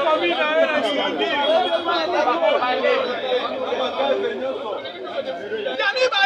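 Speech only: men's voices talking over one another in a lively exchange.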